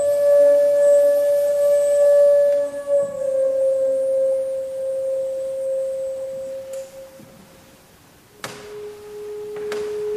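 Kyotaku, a Japanese end-blown zen bamboo flute, playing long held notes: a sustained tone that dips slightly in pitch about three seconds in and fades away, then after a short lull a new, lower note starts sharply about eight and a half seconds in.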